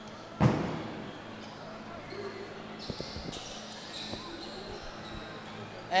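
Basketball bounced on the court by a player at the free-throw line: a loud thump about half a second in, then a few lighter bounces around the middle, over faint crowd chatter.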